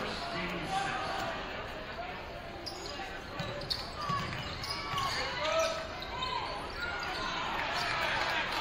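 A basketball being dribbled on a hardwood gym floor, with sneakers squeaking in many short chirps from about three seconds in, as play runs. Voices in the stands talk throughout.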